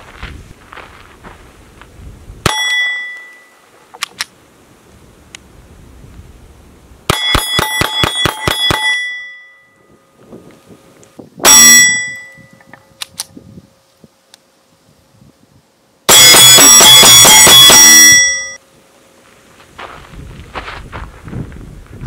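Ruger Mark I .22 pistol firing at a steel plate target, each hit making the steel ring with a bell-like clang. There is a single shot early, then a quick string of about eight shots about seven seconds in, another short burst about twelve seconds in, and a long, very loud rapid string near the end.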